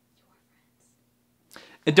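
Near silence with a faint steady hum, then a short breath and a man starting to speak near the end.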